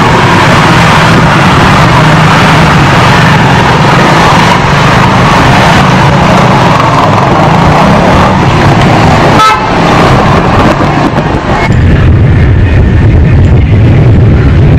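Loud, distorted street traffic noise with vehicle horns. There is a brief dip about nine and a half seconds in, and the sound turns duller and lower over the last couple of seconds.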